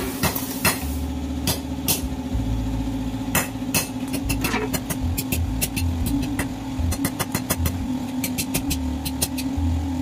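A steady low machine hum runs throughout, with sharp taps and clicks over it. The taps are scattered at first and come in quick runs of several a second near the end.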